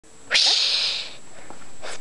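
A person's sharp, breathy hiss of air, like a sneeze or a 'psshh', lasting under a second. It is followed near the end by a quick breath in.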